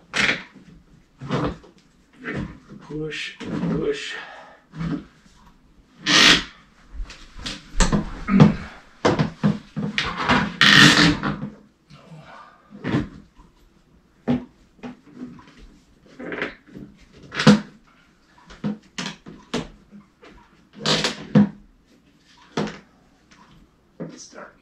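A paramotor cage hoop and its netting being handled and forced onto a tight frame joint: a string of irregular knocks, scrapes and rustles of plastic, metal and netting.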